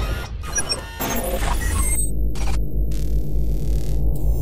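Logo-intro sound design: whooshes and scattered high pings over a deep bass drone for the first two seconds, then the effects drop away, leaving the steady low drone.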